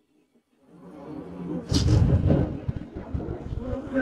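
A low rumble swells up out of silence about a second in, with a short sharp hiss near the middle, in a film's sound-effects track.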